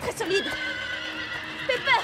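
A horse's whinny sound effect in a cartoon soundtrack: one long, held neigh ending in a quick wavering rise and fall near the end, a frightened whinny from a horse balking on a wooden bridge.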